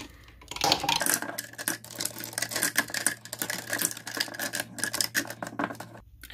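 Plastic lipstick tubes clicking and clattering against one another and against a clear acrylic organizer as they are packed tightly into its compartments, a rapid, irregular run of small clicks.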